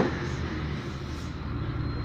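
A steady low rumble of a running engine in the background, even throughout with no knocks or clinks over it.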